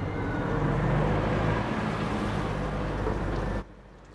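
Engine of a vintage black sedan running as the car rolls slowly in through a gateway. It grows louder over the first second, holds steady, then cuts off suddenly near the end.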